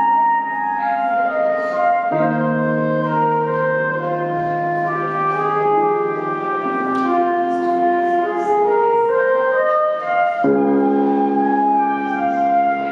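ROLI Seaboard synthesizer playing improvised, sustained chords with a melody line above them. The chords change about two seconds in and again near the end, and just before that last change a note slides upward.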